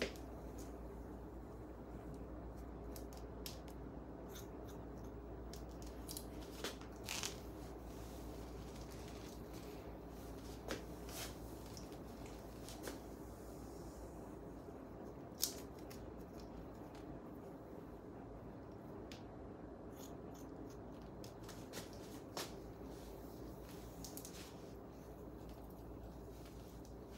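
Hair-cutting shears snipping through sections of long straight hair: single, irregular snips a few seconds apart over a steady low hum.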